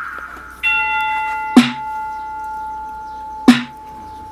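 Instrumental hip hop beat: a hard snare-like drum hit about every two seconds, with a bell-like chime note that comes in under a second in and is held.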